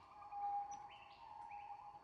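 Faint bird calls in montane forest: a few short high notes over a steady, faint high hum.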